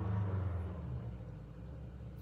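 A passing vehicle's engine: a low rumble, loudest at first, that fades away after about a second.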